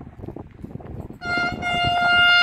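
Horn of an approaching Bombardier TRAXX electric locomotive, one long steady note starting about a second in. It is sounded as a greeting to trainspotters waving at the crossing.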